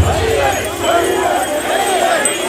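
A crowd of portable-shrine bearers shouting together, many voices overlapping in a steady mass of calls.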